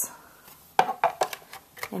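A run of short sharp clicks and clacks of the clear plastic cutting plates being handled and settled on a die-cutting machine's platform, starting about a second in.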